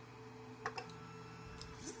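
Two light clicks from the Creality CR-10S control box's rotary knob being pressed, over the printer's low steady hum. A faint low motor tone then sets in, with a short rising whine near the end as the stepper motors move the print head on to the next leveling point.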